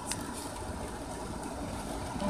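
Steady low rumble with a faint hiss, no distinct events.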